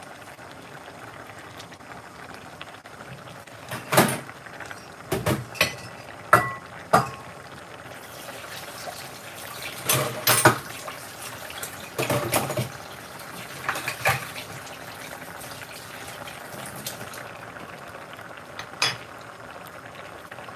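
Brown stew sauce simmering in an aluminium pot with a steady low bubbling, broken by about a dozen short clinks and knocks of utensils and pot that come in small clusters.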